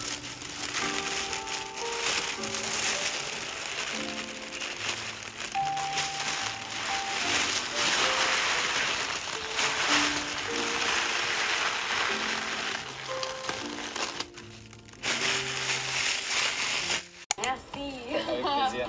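Plastic sheeting crinkling and rustling as it is handled, over background music with a slow melody. The crinkling breaks off briefly about 14 seconds in and stops just before the end.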